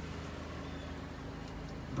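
A car engine idling with a steady low hum.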